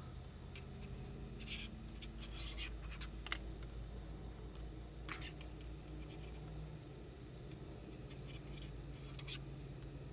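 Yarn and a crocheted amigurumi piece being handled and stitched: faint rubbing and scratching, with a few sharp clicks, the loudest about three seconds in and near the end, over a low steady hum.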